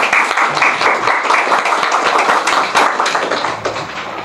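Audience applauding: many hands clapping at once in a dense, steady patter that eases off near the end.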